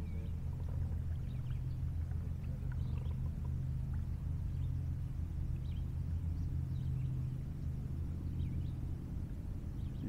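Outdoor river ambience: a steady low rumble with faint, short high chirps scattered through it.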